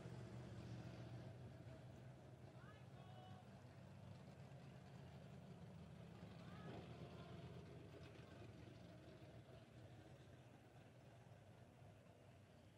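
Faint, steady low hum of a super stock dirt-track car's engine idling while stopped, with faint distant voices twice.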